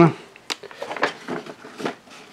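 Packaging being handled: a plastic-wrapped knife case is lifted out from among foam packing peanuts in a cardboard box, giving a few short rustles and clicks.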